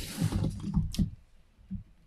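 A man's close breath and mouth sounds, with a sharp click about a second in.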